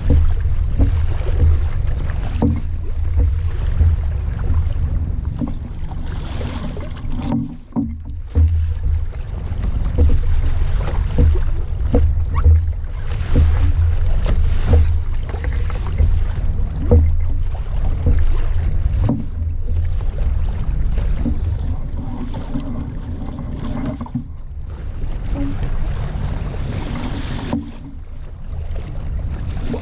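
Wind buffeting the microphone of a camera mounted on a small sailing dinghy under way, an uneven gusting rumble with a brief lull about eight seconds in. Water splashes and hisses along the hull beneath it.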